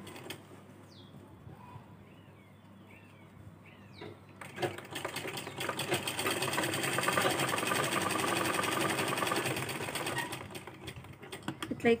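DEEPA sewing machine stitching fabric. It starts about four seconds in, runs at an even rhythmic pace for several seconds, then slows and stops near the end.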